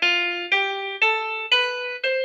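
Noteflight's piano playback rising step by step through a scale, one note every half second: the F, G, A and B of a D major scale written without its sharps. The F natural makes the scale sound not quite right.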